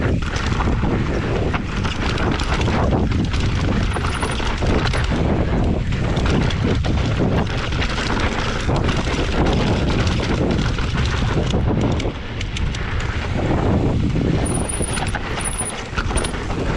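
Wind buffeting the helmet-camera microphone at riding speed, with an enduro mountain bike's tyres rolling over dirt and rocks. The bike keeps up a frequent rattle and knock over the rough ground.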